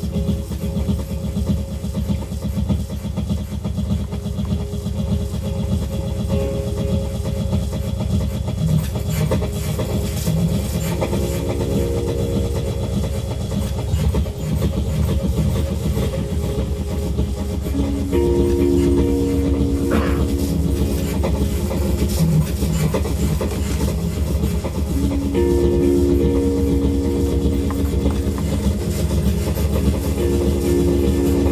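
Electronic music played live on a reacTable tabletop synthesizer: a dense, fast, rhythmic low pulse, with held synth tones growing stronger in the second half.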